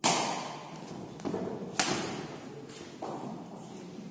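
Badminton racket strikes on a shuttlecock during a rally: several sharp smacks, the loudest right at the start and just before two seconds in, with fainter ones between and near three seconds, each trailing off in the hall's echo.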